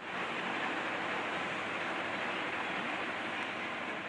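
A steady rushing hiss, even and unbroken, with no voice over it.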